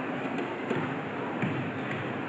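Steady murmur of an audience and hall noise, with a few faint light taps.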